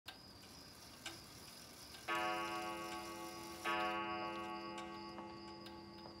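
Grandfather clock ticking, then striking the hour twice, about a second and a half apart; each stroke rings on and slowly fades.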